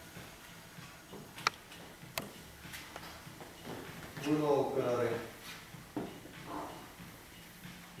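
Mostly speech: a person speaking briefly, with two sharp clicks a little under a second apart before it.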